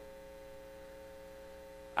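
A faint, steady hum made of several held tones, one mid-pitched tone standing out, with no change over the two seconds.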